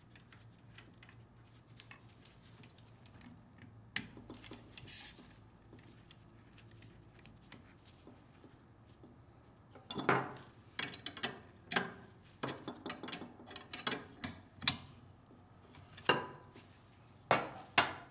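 Stainless steel tubing and compression fittings being handled and fitted: faint handling for the first half, then a run of small metallic clicks and clinks from about ten seconds in.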